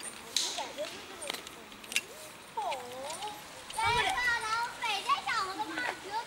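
Children's voices calling and shouting, busiest from about four seconds in, with a few light clicks.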